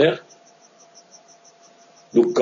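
The tail of a man's word, then a pause in a video-call line. The pause holds faint hiss, a thin steady tone and a faint high pulsing about five times a second.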